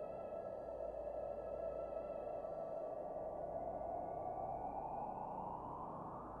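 Quiet ambient synthesizer soundscape between phrases of a meditation track: a soft, hushed drone with a held chord that fades out about halfway through, then a slow upward sweep toward the end.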